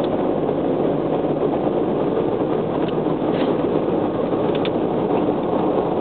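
Steady in-cabin noise of a first-generation Honda Insight 5-speed manual cruising on an expressway: an even rush of road and wind noise over its 1.0-litre three-cylinder engine, with a few faint ticks.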